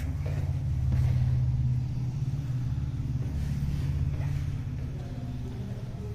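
A low rumble, loudest about a second in, then easing to a steady lower level.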